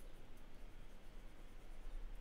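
Faint scratching of a pen stylus on a graphics tablet while sculpting, over a steady low hum of room tone.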